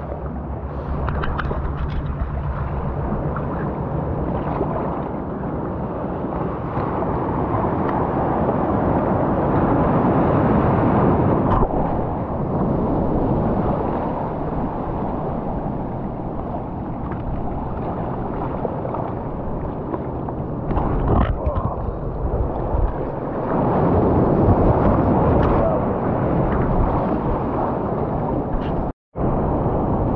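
Sea surf washing and churning around rocks close to the water's edge: a steady, muffled rush of water that swells and eases with each wave.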